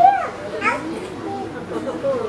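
Speech only: voices talking, some of them high-pitched children's voices.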